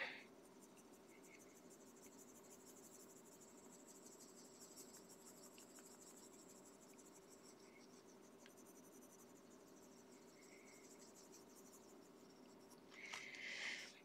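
Faint scratching of a Prismacolor Premier coloured pencil stroking on paper, over a low steady hum. The strokes grow briefly louder about a second before the end.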